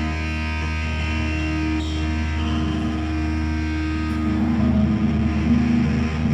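Live heavy rock band through amplifiers: distorted electric guitar holding a droning chord over a low steady hum, with few drum hits, swelling louder about four seconds in.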